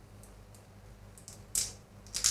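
Two 3M Dual Lock reclosable fastener strips pressed together by hand: a few faint clicks, then one sharper snap as they lock, about one and a half seconds in.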